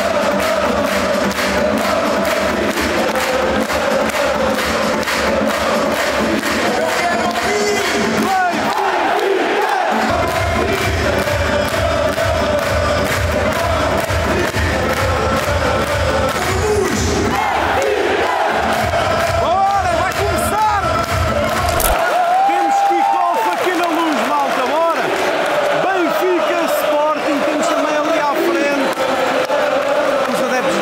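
Large stadium crowd chanting and singing along with music played over the stadium sound system, loud and continuous. The music's low beat cuts out about three-quarters of the way through, leaving the massed voices.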